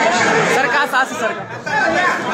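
Crowd of men talking over one another at close range, many voices at once, with a brief lull about one and a half seconds in.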